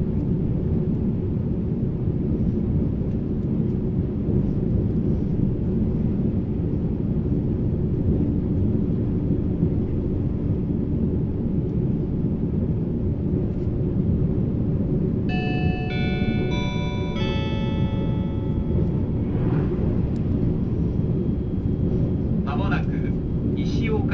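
Steady running noise of a JR East E657 series limited express, heard inside the passenger car: a low rumble of wheels on rail. About fifteen seconds in, a short melodic chime of several stepped notes plays over the onboard speakers, the signal that an automated next-stop announcement follows.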